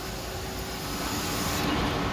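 Steady rumbling machinery noise of a boiler room, growing slowly louder.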